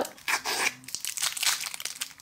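Clear plastic film wrapper crinkling and tearing as fingers peel it off a roll of washi tape, in a run of irregular crackles.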